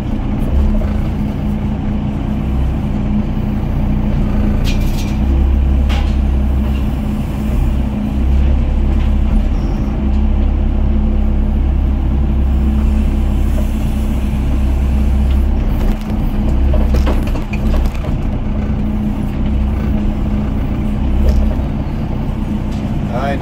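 Doosan DX55 mini excavator's diesel engine running steadily under working load as the hydraulic arm swings and dumps, heard from inside the cab, with the low drone swelling and easing as the load changes. A few sharp knocks about five seconds in and again near seventeen seconds.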